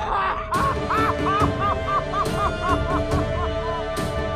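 Background music score: a nasal-toned lead plays a run of about nine short, quick notes that step down in pitch and fade, over held chords and a few sharp percussion hits.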